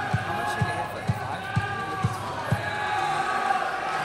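Low thuds at an even beat of about two a second, stopping about two and a half seconds in, over the murmur of a crowd in a large hall.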